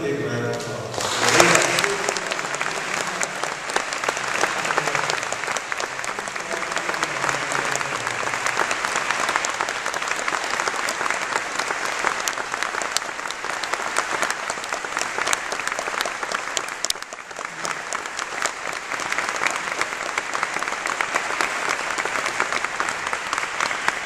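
A large audience applauding steadily. The applause swells about a second in, eases briefly around two-thirds of the way through, then picks up again.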